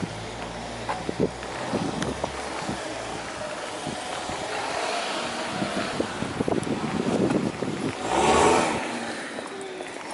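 A car passing along the street, its road and engine noise swelling to a peak near the end and then fading, over scattered light knocks.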